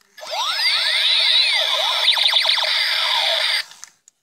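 Electronic sound effects from a toy water gun's small speaker: a dense run of overlapping tones sweeping up and down, lasting about three seconds and then cutting off.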